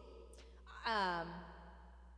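A woman's voiced sigh about a second in, its pitch sliding downward as it fades.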